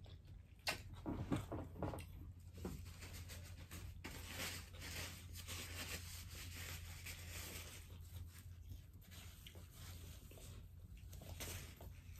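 Faint mouth sounds of chicken wings being bitten and chewed, with a few sharp clicks and smacks in the first three seconds, over a low steady hum.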